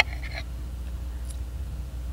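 A steady low background hum with nothing else clearly standing out, after a brief tail of speech right at the start.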